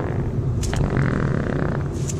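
A fart, buzzy at first and then a hissing stretch about a second in, over the steady road noise of a moving car's cabin.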